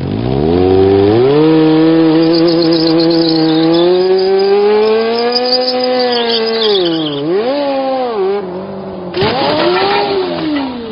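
Motorcycle engine revving: it climbs within the first second and holds high for several seconds, drops sharply about seven seconds in, then revs up and falls away again near the end.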